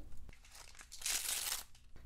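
A short crinkle of thin plastic packaging being handled, about a second in.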